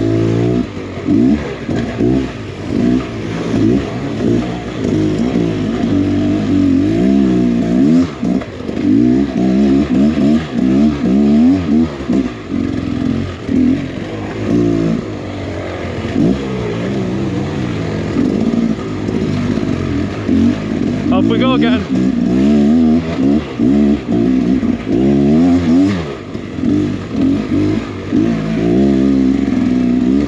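Beta X Trainer 300 two-stroke dirt bike engine revving up and down continually under throttle on a steep, rough trail climb, its pitch rising and falling with each blip.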